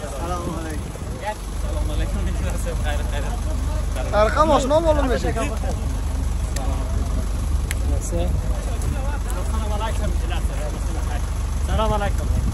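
A bus engine idling with a steady low rumble while passengers step off, with voices over it, loudest about four seconds in.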